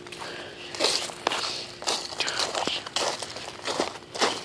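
Footsteps on fallen leaves and icy, sleet-covered ground, at about two steps a second.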